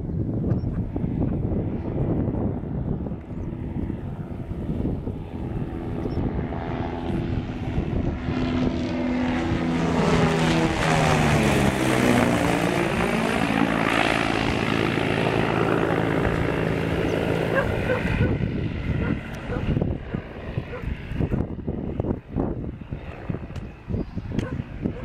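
Softex V-24 twin-engine propeller aircraft flying past low. Its engine sound grows louder until it passes overhead about halfway through, drops in pitch as it goes by, and fades in the last few seconds.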